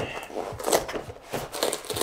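Black paper backing being peeled back from the wooden frame of a canvas print, rustling and crinkling in a few short bursts as it pulls away.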